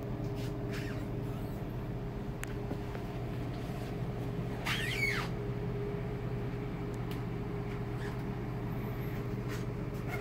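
A steady low mechanical hum with a fixed pitch, with a few faint clicks and one short high squeak about halfway through.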